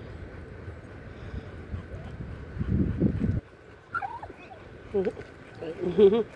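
Wind buffeting the microphone with a low rumble that builds and then cuts off suddenly about halfway through. It is followed by a few short, high, bending animal calls.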